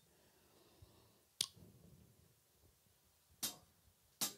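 Near-silent room, broken by one sharp click about a second and a half in and a short soft hiss near the end.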